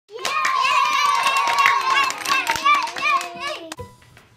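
Children's voices cheering with one long high shout, mixed with clapping, then shorter calls that fade out shortly before the end.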